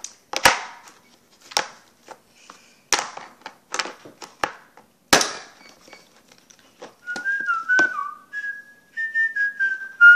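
Homemade slime being pulled and pressed by hand, giving about six sharp pops and slaps in the first five seconds. From about seven seconds a person whistles a short tune of stepping notes.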